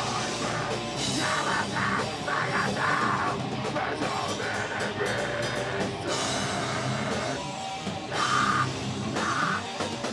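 Heavy metal band playing live: distorted electric guitars and a drum kit, with shouted vocals over them.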